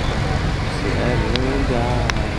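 Street traffic: a car driving away over a steady low rumble, with a person's voice in the second half and a sharp click about two-thirds of the way in.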